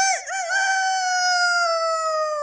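A rooster crowing: a few short wavering notes, then one long held note that slowly falls in pitch.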